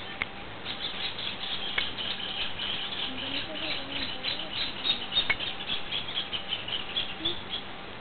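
Small birds chirping in a quick, high, irregular chatter, with a few sharp clicks scattered through.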